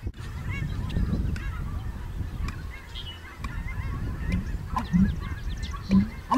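American bittern giving its booming pumping call: low, hollow gulping notes, with the loudest deep notes coming in the last second and a half. Small birds chirp faintly in the background.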